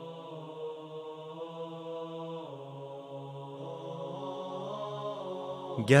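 Slow, drone-like background music of long held chords, the chord shifting about two and a half seconds in. Right at the end a man's voice begins reciting a poem over it.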